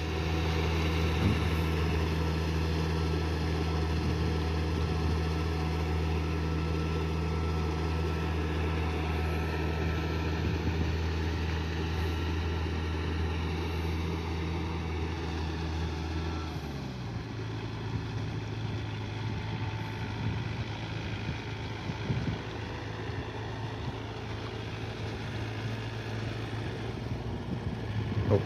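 Diesel engine of a cage-wheeled Yanmar tractor running steadily as it works a flooded rice paddy. About 17 seconds in, its note drops and gets quieter.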